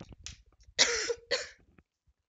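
A woman coughing: two loud, harsh coughs about a second in, after a quick intake of breath. Her throat is itchy from allergy symptoms.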